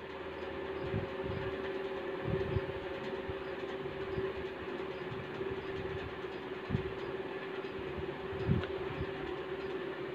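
Buffalo being milked by hand: streams of milk squirting into a steel pot, over a steady droning hum.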